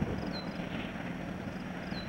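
Distant Canadian Pacific diesel freight locomotive running as its train approaches: a steady low rumble with a faint, even engine hum.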